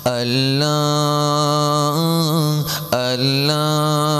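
A man singing a gojol, a Bengali Islamic devotional song, solo into a microphone, holding two long drawn-out notes with a brief break for breath just under three seconds in.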